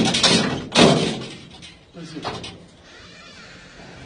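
Banging on a wooden door with the hand, in two loud rapid flurries of knocks in the first second.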